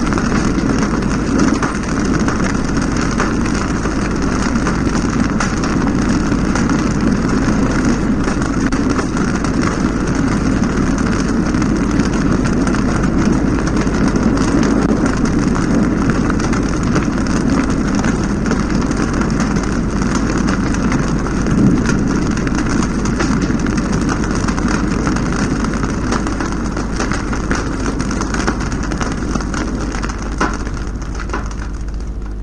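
A dense, steady, rumbling wall of noise from the lo-fi outro track of a raw black metal demo, easing slightly in level near the end.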